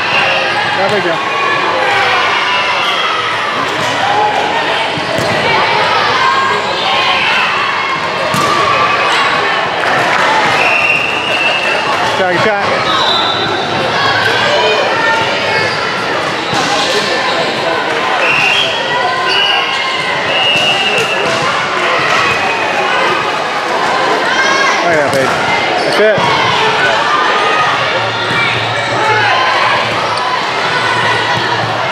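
Busy indoor volleyball hall: many voices of players and spectators talking and calling over one another, with thuds of volleyballs being hit and bouncing on the court. A few short high-pitched squeaks or whistle tones come through around the middle.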